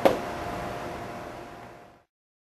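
A single sharp knock, then the steady hum of running computers and their fans with a faint steady tone, fading out to silence.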